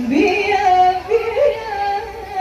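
Female lead vocalist of a qasidah rebana group singing. Her voice slides up into the first note, then holds wavering, ornamented notes with quick steps up and down in pitch.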